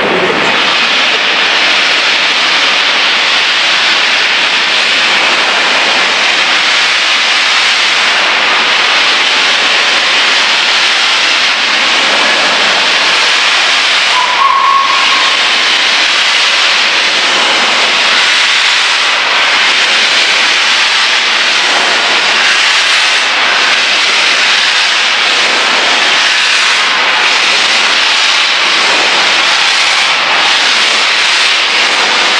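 Flying Scotsman, an LNER A3 Pacific steam locomotive, venting steam in a loud, steady hiss. A brief higher tone sounds about halfway through.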